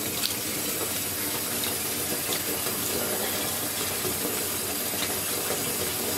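Water running steadily from a tap into a filling bathtub.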